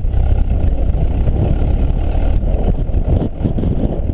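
Ford AA doodlebug's four-cylinder engine running steadily as it is driven, with strong wind buffeting the microphone and a rough, low rumble throughout.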